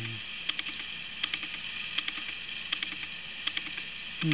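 Soft clicking, a small cluster of ticks about every three-quarters of a second, over a steady hiss.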